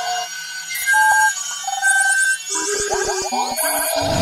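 Electronic intro jingle made of short synthesized beeps that jump between pitches, over fast, chirping high glides. A run of light clicks comes in the second half.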